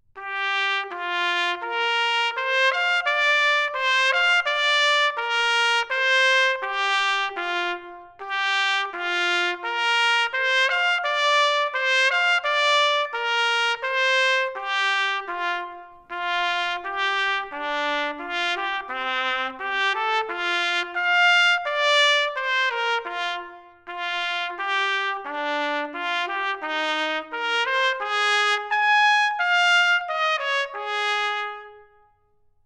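Solo trumpet, unaccompanied, playing fast runs of separately tongued notes in long phrases, with short pauses for breath about eight, sixteen and twenty-four seconds in.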